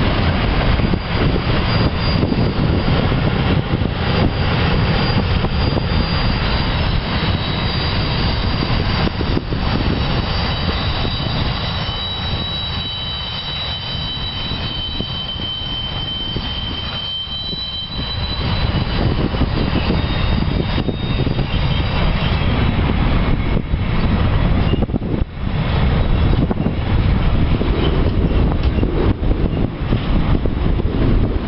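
Freight train wagons rolling past on the rails: a steady rumble of wheels and wagons, with thin high-pitched squealing from the running gear through the middle stretch.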